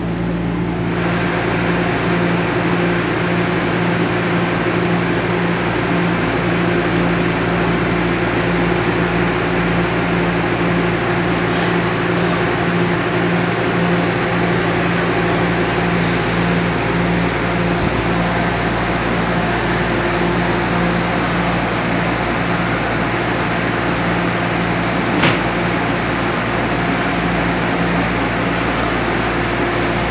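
Nippon Sharyo light rail car standing with its doors open, its air-conditioning and onboard equipment humming steadily: a low drone with a higher tone over it and a fan-like hiss that grows louder about a second in. A single sharp click about 25 seconds in.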